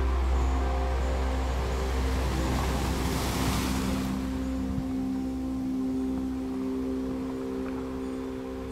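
Ambient new-age meditation music: several long held tones over a deep low drone that weakens about four and a half seconds in. A whoosh of noise like a wave swells and fades, peaking about three and a half seconds in.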